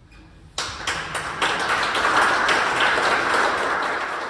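Audience applauding: many hands clapping, starting suddenly about half a second in and holding steady.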